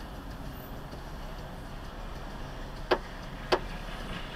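Steady low hum of a car's cabin while stopped at an intersection, with two sharp clicks about half a second apart near the end.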